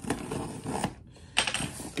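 Cardboard shipping box being handled and pulled at to get it open: irregular rustling and scraping of the cardboard, louder about one and a half seconds in.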